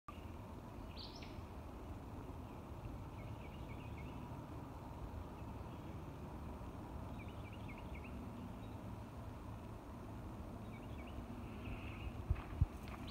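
Woodland ambience: a bird sings short runs of quick high chirps about every four seconds over a low, steady background rumble.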